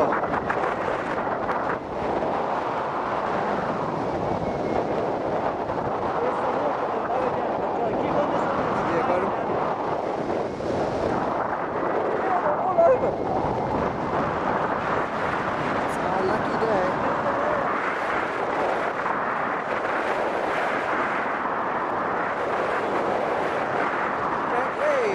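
Wind rushing over the microphone of a camera on a tandem paraglider in flight, a steady rush of airflow, with a brief knock about halfway through.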